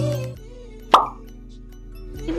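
Background music fades out, then a single short pop or plop sound effect comes about a second in, over a faint low steady tone.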